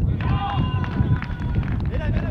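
Children's high voices shouting and calling out across the football pitch over a low rumbling noise.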